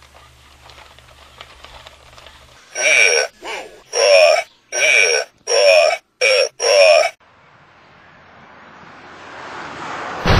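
Robosapien toy robot's gruff, grunting voice calls out "Come and get me punk" in a string of short bursts with sliding pitch, about three to seven seconds in. After it, a whooshing noise swells steadily toward the end.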